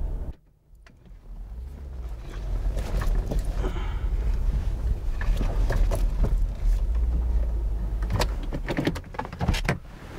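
Audi A6 Avant running, a steady low engine and tyre rumble that builds after a brief gap and then cuts out near the end as the car stops, with several clicks and knocks toward the end.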